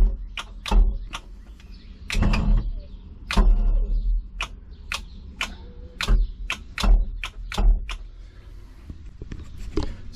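Irregular sharp clicks and knocks, about two a second, with a few dull low thumps among them. They die away shortly before the end, and one more click comes near the end.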